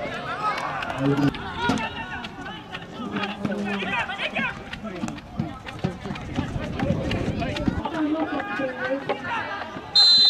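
Several people talking over one another, some of the voices high-pitched, with no single speaker standing out.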